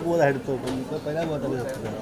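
Laughter over the chatter of a crowd of people, loudest right at the start and then continuing in short wavering bursts.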